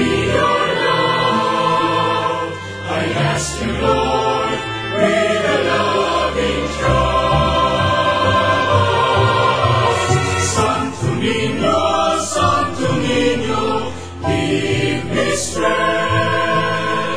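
Choir singing a slow hymn.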